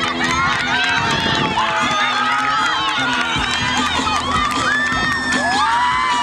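A group of teenagers cheering and shouting at once, many excited yells overlapping, as a runner sprints past.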